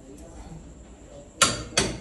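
Click-type torque wrench set to 700 N·m giving two sharp clicks about a third of a second apart near the end, under a hard pull on the handle: the sign that the bolt has reached the set torque.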